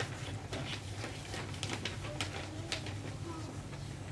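Room tone of a small hall picked up through a microphone: a steady low hum, with a few soft, scattered clicks and faint murmurs.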